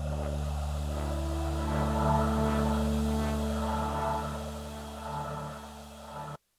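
Roland Zenology software synthesizer playing its 'Alien Vox' preset, a voice-based synth tone: one held chord over a steady low drone, with a choir-like vocal colour that wavers on top. It is loudest about two seconds in, then slowly fades.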